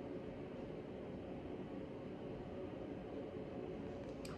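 Steady low background noise with a faint hum and no distinct events: room tone.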